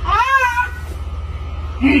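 A single short high call, rising then falling in pitch like a cat's meow, over a steady low hum.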